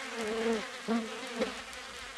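Fly buzzing, a low hum that wavers up and down in pitch as it flies about.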